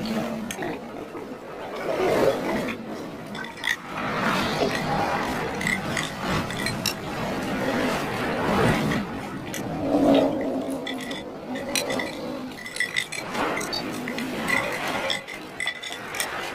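Metal forks and spoons clinking and scraping against ceramic bowls as two people eat, a scatter of short, sharp clinks throughout.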